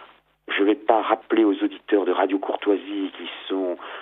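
Speech only: a voice talking in a band-limited radio broadcast, with a brief pause just after the start.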